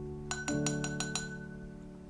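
Glass jar clinking six quick times in a row, each strike ringing at the same high pitch, as a spatula is knocked against it while transferring sourdough starter. Soft piano music plays under it.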